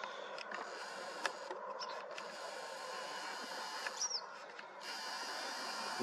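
Faint, steady open-air background noise with a single bird chirp about four seconds in and a lone click about a second in.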